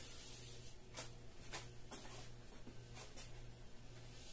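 Faint scratchy swishes of a kitchen sponge dragged over wet paint on drywall, about five short strokes that pull streaks for a faux wood-grain finish, over a low steady hum.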